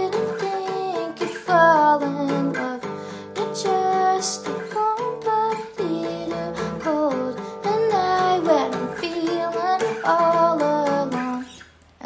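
A woman singing a melody while strumming chords on a guitar; the playing and singing die away just before the end.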